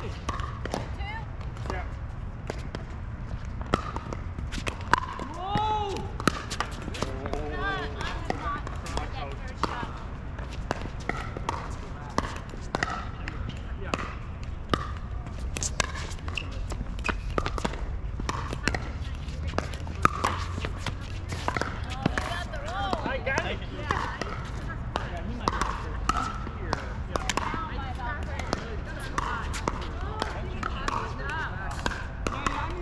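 Pickleball paddles striking the plastic ball during rallies: sharp pops at irregular intervals, with voices behind them.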